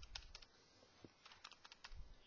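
Faint, irregular clicks of calculator buttons being pressed, about a dozen in quick succession.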